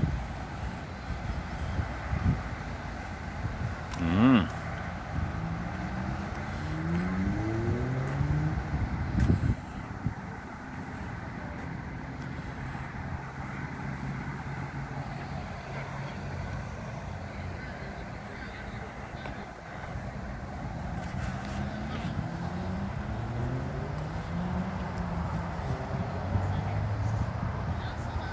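Cars driving past on a road, with a steady background of traffic noise; engine pitch rises as vehicles pull away, once several seconds in and again near the end.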